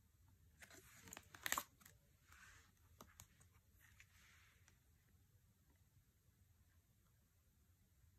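Oracle cards being handled: a cluster of sharp taps and slides of cardstock about a second in, then softer rustling as cards are laid on the decks and the next pair is drawn over the following few seconds.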